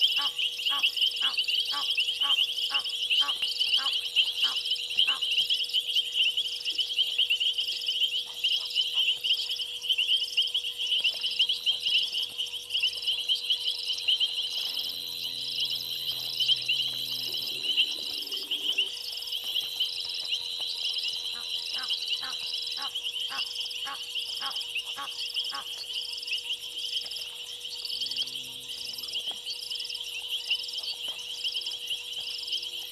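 Night chorus of insects and frogs at a waterhole: a dense, continuous high trilling, with runs of rapid rhythmic clicking calls in the first few seconds and again later on.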